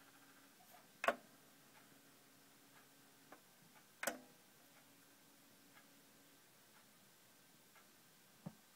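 Two clicks of an Onkyo CP-1046F turntable's front-panel controls, about one and four seconds in, with a few lighter ticks. Between them a faint low hum comes from the automatic tonearm drive as it cues the raised arm toward the end of the record.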